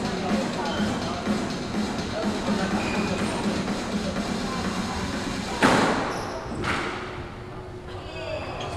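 Two sharp cracks of a squash ball struck hard, about a second apart near the end, over background music and voices.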